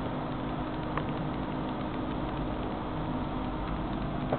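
Desktop PC's cooling fans running, a steady whir with a low hum, with one faint click about a second in.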